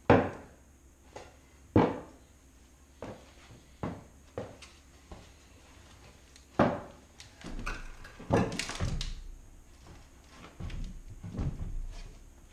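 Sharp wooden knocks and thuds as a long wooden beam is worked against a heavy stone slab strapped to a plywood board, about half a dozen in the first seven seconds. Then rough scraping and grinding with a low rumble as the slab and board are levered along the tiled floor, once about two-thirds of the way in and again near the end.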